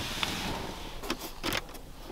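Soft rustling, then a few light clicks and taps, from hands handling the car's interior plastic trim.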